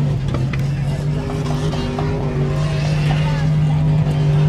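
A motor vehicle's engine idling with a steady, even hum, with faint voices in the background.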